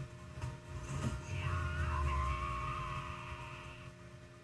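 Quiet anime soundtrack playing in the background: music with a low rumble and a held tone that fade toward the end.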